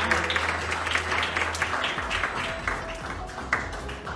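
Audience clapping over background music, the clapping gradually dying down.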